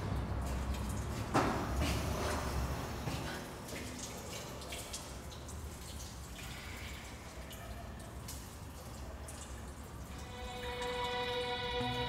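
Low room rumble with scattered faint clicks and a sharper click about a second and a half in. Sustained, organ-like music chords fade in near the end.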